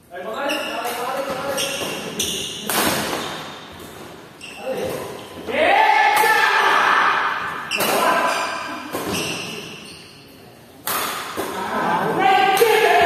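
Badminton doubles rally in a hall: sharp racket strikes on the shuttlecock at irregular intervals, mixed with players shouting, loudest around a jump smash about halfway through.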